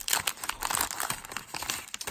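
Wax paper wrapper of a 1981 Fleer baseball card pack crinkling as it is opened by hand, a quick run of small irregular crackles.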